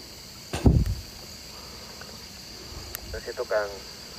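Crickets chirping as a steady high-pitched drone. A short loud sound comes about half a second in, and a few brief spoken sounds come near the end.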